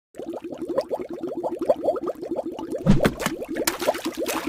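Bubbling sound effect: a fast run of small rising bloops, about ten a second, joined about three seconds in by a noisy swoosh.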